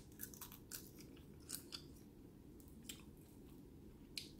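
Faint chewing and crunching as a person bites into a fried chicken wing: several small, crisp crunches spread over a few seconds.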